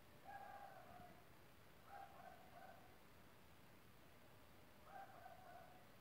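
Faint squeaks of a felt-tip projector marker dragged along a ruler edge across a painted wall, three short strokes each sliding slightly down in pitch.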